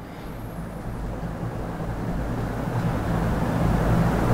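A low, engine-like rumble that grows steadily louder.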